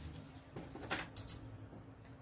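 Paper pattern piece being folded and handled by hand: soft rustling with a few short crisp crinkles around the middle, the sharpest about a second in.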